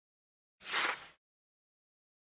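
A single whoosh sound effect from a channel logo animation, about half a second long, swelling and fading just under a second in.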